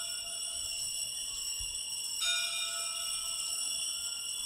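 Altar bells ringing at the elevation of the host during the consecration: a high, bright ringing that sustains and is rung again about two seconds in.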